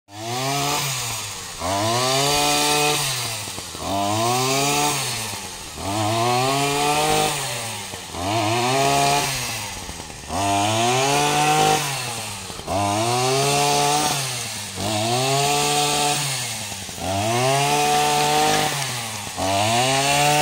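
VST brush cutter's small petrol engine driving a tiller attachment through soil, its pitch rising and sagging in a repeating cycle about every two seconds as the blades bite into the ground.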